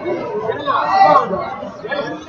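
Indistinct chatter of several people talking in a large hall, no words clear.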